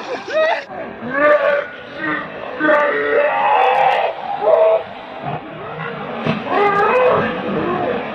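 Several young men shouting and whooping in play, with water splashing as they kick and throw it at each other.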